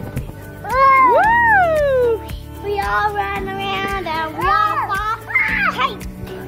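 A young child's loud, high-pitched squeal that rises and falls, followed by more wordless child vocalizing, over background music.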